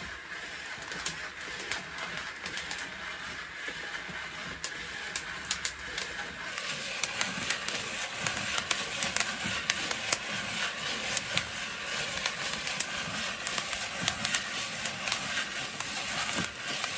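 Coffee beans tumbling in a hand-turned wire-mesh drum roaster over a wood fire: a steady rustling rattle with many sharp clicks, getting louder about six seconds in.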